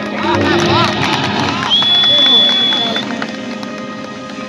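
Live stage music played loud over a PA, with a voice singing short arching phrases over a steady backing. A single high steady tone is held for about a second near the middle.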